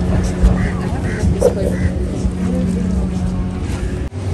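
A steady low hum, like a motor running, under faint background voices; the hum fades out shortly before the end.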